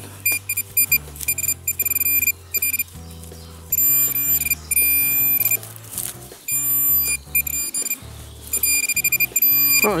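Metal-detecting pinpointer beeping in quick pulses that run into longer steady tones as its probe is worked through the dug soil, signalling a metal target close by. Background music with a low bass line plays underneath.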